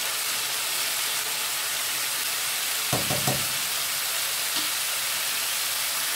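Ground spice paste and onions sizzling steadily as they fry in oil and ghee in a nonstick pan, stirred with a plastic spatula.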